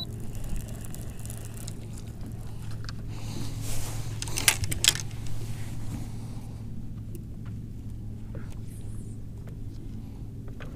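Steady low hum of an electric bow-mount trolling motor holding the boat in place. A few clicks and a short rustle come from a spinning rod and reel being handled about four to five seconds in.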